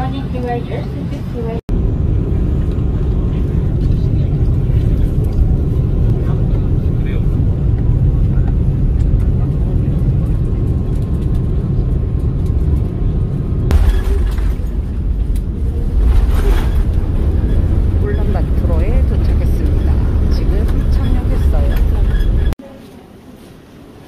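Airliner cabin noise: a loud, steady low rumble from the aircraft's engines and air system, with indistinct voices of passengers, and two brief louder rushes past the middle.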